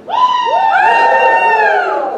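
Several people letting out a loud, high, drawn-out shriek together, the voices coming in one after another and sliding down as they die away near the end.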